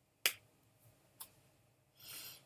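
A single sharp click, then a fainter click about a second later.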